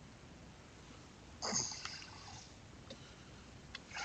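Quiet room tone broken about a second and a half in by one short, sharp sniff from a man at the microphone; two faint ticks follow near the end.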